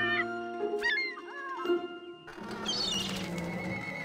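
Cartoon background music with a bird's short wavering cries over it, three times; the music breaks off briefly a little past halfway and starts again.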